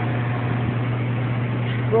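Aerocool Trophy Series evaporative cooler running on high: its belt-driven blower fan and motor make a steady low hum under a constant rush of air.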